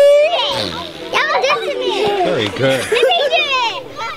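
A group of children shouting and laughing close to the microphone, several high voices overlapping, with a long held shout carrying over at the start.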